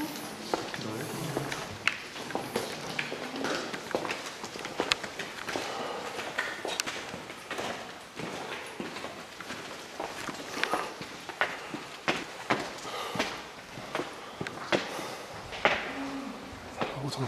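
Footsteps of several people walking up a cave path and steps: irregular scuffs and taps, with faint voices in the background.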